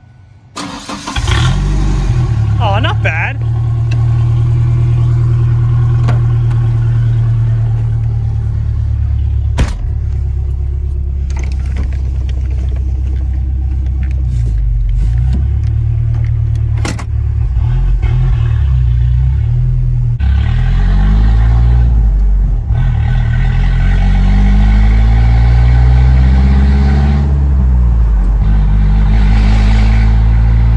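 Ford Ranger pickup engine with its muffler cut off. It starts about a second in and runs loud through the open exhaust, then revs as the truck drives off, the engine pitch rising and falling repeatedly through the gears.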